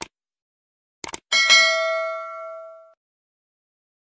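Subscribe-button animation sound effect: a click, a quick double click about a second in, then a notification bell ding that rings and fades out over about a second and a half.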